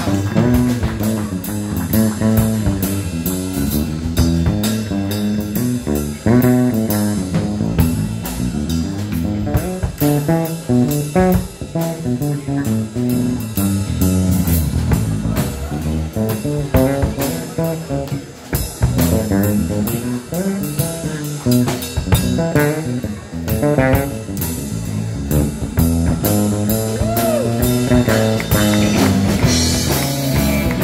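Live blues band playing an instrumental passage: electric guitar with bent notes over electric bass and a drum kit, at a steady beat.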